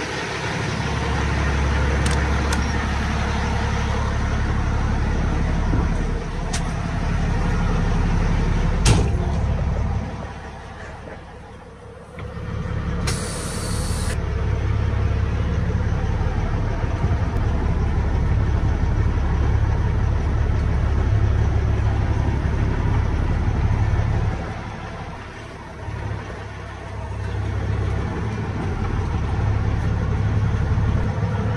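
Heavy diesel truck engine idling with a steady low rumble that drops quieter twice, and a short high hiss of air about 13 seconds in.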